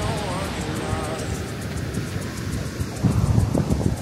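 Outdoor ambience with wind rumbling on the microphone, which grows louder near the end, under background music and faint voices.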